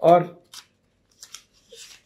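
A man's voice says one short word, then pauses. The pause holds a few faint short clicks and a soft breath-like hiss near the end.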